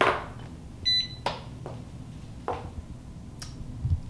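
A Presto Precise digital pressure canner gives one short electronic beep about a second in as it powers up on being plugged in. Several clicks and knocks come from the plug and cord being handled.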